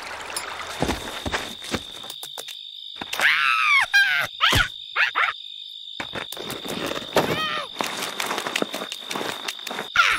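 Steady insect chirring from a cartoon's nature soundtrack, with short squeaky, wordless cartoon-creature vocal calls, a cluster about three to four and a half seconds in and another about seven seconds in.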